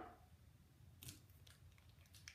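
Near silence, with a few faint clicks and rustles of hair-styling tools being handled, the clearest about a second in.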